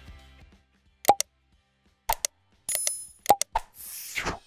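Sound effects of an animated like, subscribe and bell button graphic: pairs of short pops and clicks, a bright ding near the three-second mark, two more clicks and a swish at the end.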